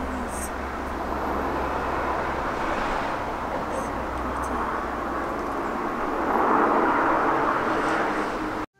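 Outdoor ambience of a steady rushing noise with a low rumble, swelling louder about six seconds in as a car passes on the road below.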